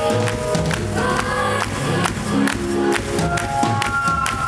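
Live pop band music recorded from the audience: a steady drum beat under sustained held notes, loud throughout.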